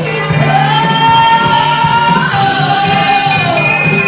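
A woman singing into a microphone over instrumental accompaniment: she holds a long high note from about half a second in, steps down to a slightly lower held note, and lets it slide downward near the end.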